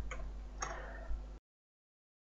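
A few faint computer mouse clicks over low room hum, then the sound cuts off abruptly to dead silence about one and a half seconds in.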